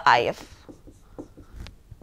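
Stylus writing on a digital pen display: faint short scratches and taps as a few letters are written.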